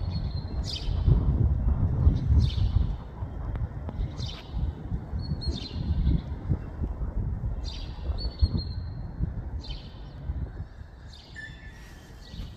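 A small bird calling outdoors, short high chirps repeated about once a second. Under it runs a low rumble, louder in the first few seconds.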